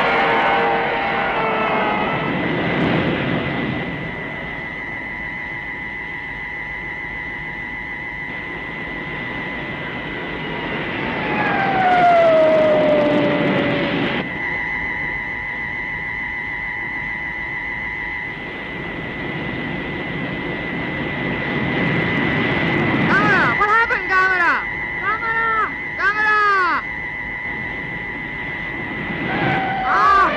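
Electronic science-fiction sound effects of a flying saucer in space: a steady high whine over a hum throughout. A tone glides down about a third of the way in, and near the end comes a run of warbling electronic chirps that rise and fall. At the very start the tail of Gamera's cry fades out.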